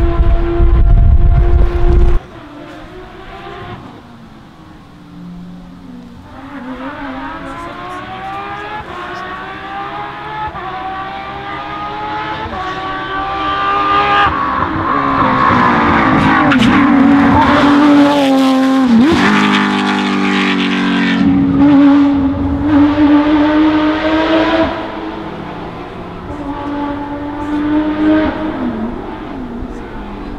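Porsche 997 GT3 rally car's flat-six engine approaching and passing, its note climbing and falling in steps through the gear changes. It is loudest in the middle, with a sharp drop in pitch about two-thirds of the way through, then dies away. A loud engine sound cuts off abruptly about two seconds in.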